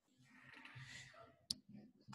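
Near silence with a faint, indistinct noise, then a single sharp click about one and a half seconds in, as of a computer mouse button being pressed.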